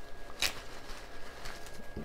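Floral tape being worked around a bouquet of silk stems: one short, sharp rip about half a second in, then only faint handling noise.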